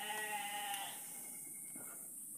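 Livestock bleating once, a short call of under a second with a quavering pitch.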